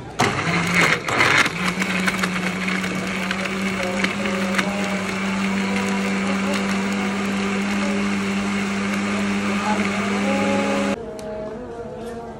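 Electric countertop blender pureeing watermelon chunks: it starts with a rattle of pieces knocking around the jar, then settles into a steady, slightly rising motor hum as the fruit turns to smooth juice, and cuts off sharply near the end.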